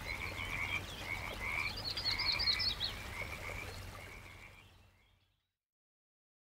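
A chorus of frogs calling in short, repeated croaks, fading out over its last couple of seconds.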